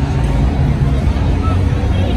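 Busy city street ambience: a steady low rumble of traffic, with people talking among the crowd.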